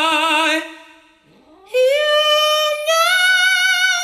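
A man singing unaccompanied: a long held note with vibrato breaks off about half a second in, and after a short pause his voice slides up into a long, loud, high held note.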